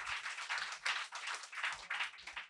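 Audience applauding, a dense run of many hands clapping.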